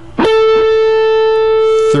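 Electric guitar playing a single note picked on the 3rd string at the 14th fret (an A). It is struck a fraction of a second in and rings steadily for about a second and a half.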